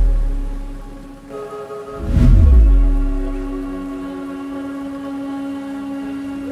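Ambient background music: held synth chords with deep booming swells that fall in pitch, one fading out at the start and another about two seconds in.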